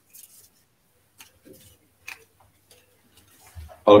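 Faint scattered clicks and light rustles of the next lot being drawn and opened by hand.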